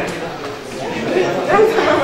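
Indistinct voices: people talking, loudest in the second half.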